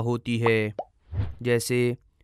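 A man's voice speaking in two short phrases with a brief pause about a second in.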